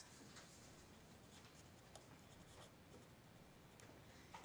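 Faint, intermittent scratching of a felt-tip pen writing words on paper.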